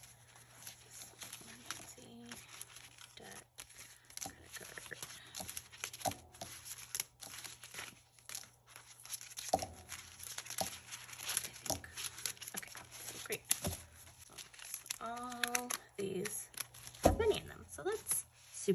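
Clear plastic cash envelopes crinkling and rustling as they are handled and pulled out of a ring binder, with many small irregular taps and clicks. There is a single louder thump near the end.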